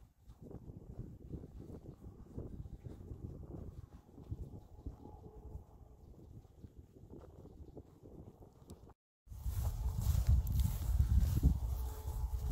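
Faint, uneven low rumble of wind and handling noise on the phone's microphone. It drops out briefly about nine seconds in, at a cut, then comes back louder.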